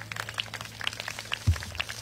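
Scattered hand clapping from an outdoor crowd as a song ends. Under it a low steady hum stops with a thump about one and a half seconds in.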